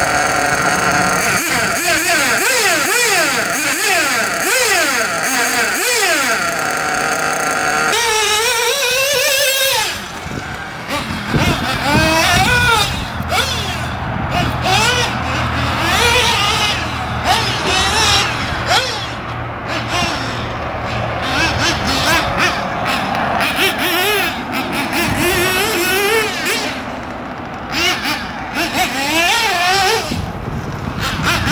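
Nitro engine of a Kyosho MP10 1/8-scale buggy revving up and down, its pitch rising and falling over and over with the throttle. The sound changes about eight to ten seconds in.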